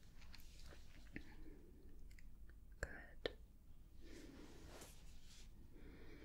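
Faint close-up hand sounds: a few soft clicks, with light rustling between them.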